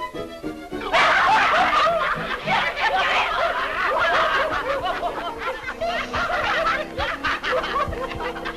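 A crowd of men laughing together over background music. The laughter starts loud and sudden about a second in and goes on as a dense jumble of many voices.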